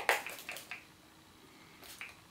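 Fine-mist pump spray bottle of hydrating face mist spritzing onto the face: a sharp hiss at the start, a few fainter short spritzes just after, and another near the end.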